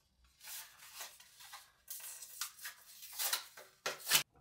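Toothbrush packaging being handled and opened by hand: a string of short, irregular rustles and scrapes.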